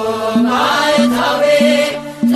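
Ethiopian Orthodox mezmur (devotional hymn): a voice singing a chant-like melody over a steady, evenly repeating beat.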